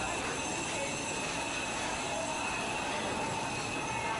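Steady din of a busy covered market: a constant hiss with a fixed high hum running through it and faint chatter from people around.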